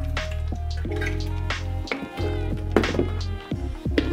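Background music with a deep, sustained bass line, held melodic notes and sharp percussive hits.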